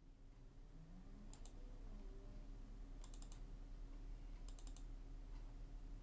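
Quiet computer mouse clicks in three quick clusters, about a second and a half apart, as folders are double-clicked open in a file dialog. A faint steady hum sits underneath.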